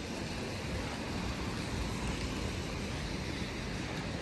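Steady street noise of traffic on rain-wet roads: an even hiss with no distinct events.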